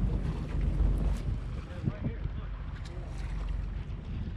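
Wind on the microphone aboard a sportfishing boat at sea, over a steady low hum from the boat and the wash of open-ocean water.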